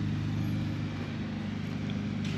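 A motor or engine running steadily in the background, a low, even hum.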